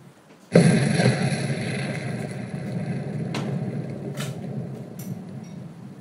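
A loud rumbling noise that starts suddenly about half a second in and slowly fades, with a few sharp knocks through it.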